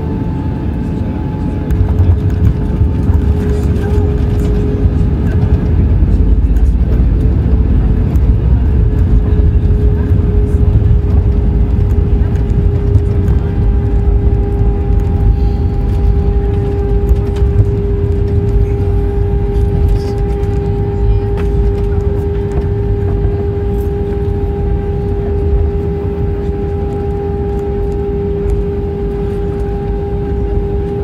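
Airbus A320 landing rollout heard from the cabin: a loud low rumble builds suddenly about two seconds in as the aircraft decelerates on the runway with its ground spoilers raised, then eases off toward the end. A steady engine hum from its IAE V2500 turbofans runs underneath.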